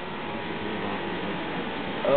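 Steady whirring hiss of an electric core drill motor running, with faint steady tones and no rise or fall in pitch.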